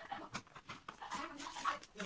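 White paper gift wrapping being torn and crinkled by hand as a package is unwrapped: a rapid, irregular run of rustles and rips.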